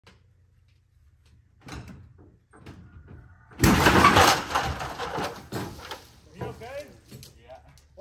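A tractor engine runs low and steady, then about halfway through a sudden loud crash lasting about a second as the cable breaks, tailing off into a voice.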